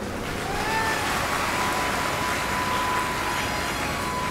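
Large audience applauding in a hall, a steady even wash of clapping, with a faint steady tone underneath from about a second in.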